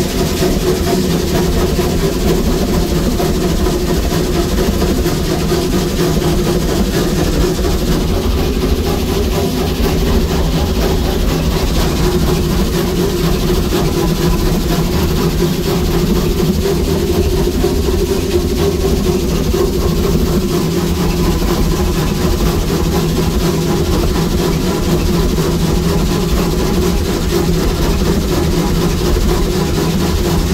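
Steady running noise heard from inside the cab of a 1916 Baldwin steam locomotive under way: loud and continuous, with several steady humming tones beneath it.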